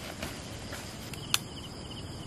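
Night insects calling: a cricket's rapid pulsed trill starts about a second in, over a steady background hiss. A single sharp click comes just after the trill begins.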